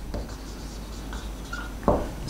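Marker pen writing on a whiteboard: a faint, scratchy rubbing as the strokes are drawn, with a short click near the end.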